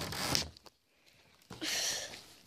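Handling noise from the recording phone: a short scratchy rustle at the start and a louder one near the end, with a quiet gap between, as the phone is covered and moved about.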